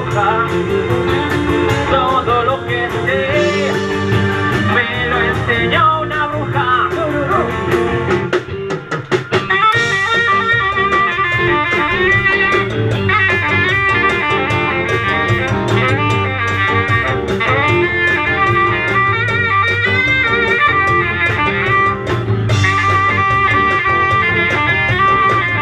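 Live band playing an instrumental break: electric guitars, bass and drum kit under a lead line. A drum fill comes about eight to nine seconds in, after which a saxophone takes the lead.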